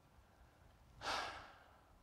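A man's short audible breath, about half a second long, about a second in, otherwise near-quiet room.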